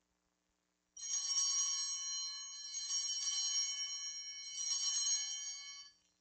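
Altar bells ringing at the elevation of the host: a bright, shimmering ring starting about a second in, renewed with a second ring near the end, then cut off. It signals the consecration.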